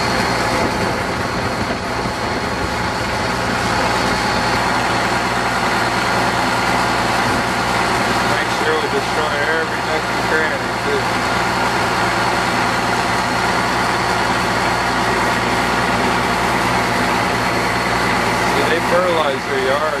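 Boat motor running steadily while the boat is under way, with constant wind and water noise.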